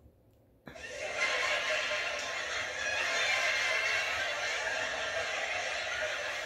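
Canned studio-audience laughter from a laugh track, starting abruptly about half a second in and holding steady.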